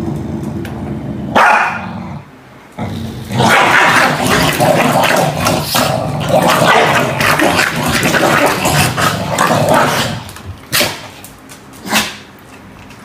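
Two corgis growling and barking at each other in a scuffle: a low growl at first, then a loud, rough flurry from about three seconds in that dies down after about ten seconds.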